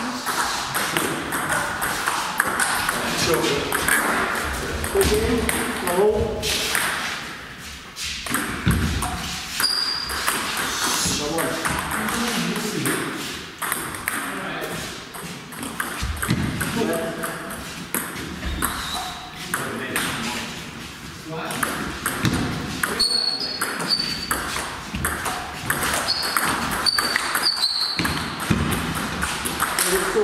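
Table tennis ball clicking against bats and the table during rallies, with voices talking in the background.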